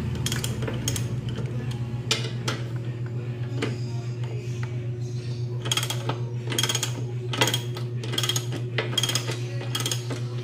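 Ratchet wrench with a 12 mm socket clicking in short bursts as bolts are backed out, the strokes sparse at first and then coming steadily about two a second in the second half. A steady low hum runs underneath.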